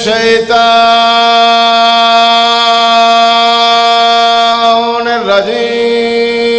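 A male zakir's voice chanting through a microphone and loudspeaker, holding one long steady note for several seconds. Near the end it slides into a new held note.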